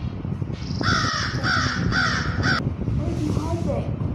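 A crow cawing four times in quick succession, harsh calls about half a second apart with a falling pitch, followed by faint voices.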